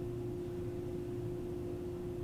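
Steady room hum: a constant mid-pitched tone over a low rumble and faint hiss, with no voices.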